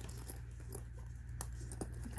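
Faint handling of a zippered fabric pencil case, with a few light clicks from its metal zipper pull.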